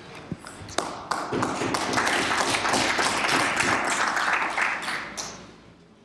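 Applause from the members of a legislative chamber: a few scattered claps, then dense clapping building about a second in and dying away near the end.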